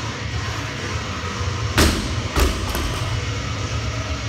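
Bumper-plate-loaded barbell dropped from the shoulders onto rubber gym flooring, landing with a loud thud a little under two seconds in and bouncing to a second thud about half a second later.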